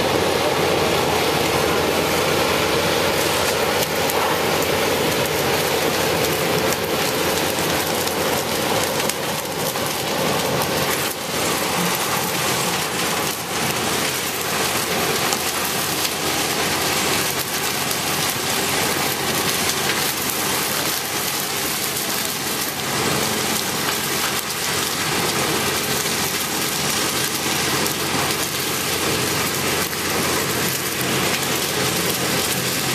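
Case sugarcane harvester cutting cane: its engine and chopping machinery run steadily in a dense, noisy din, with cane billets pouring from the elevator into the trailer running alongside.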